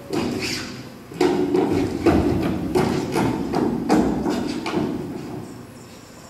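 A quick series of knocks and thuds, about three a second, like footsteps stamping on a wooden stage floor, fading toward the end.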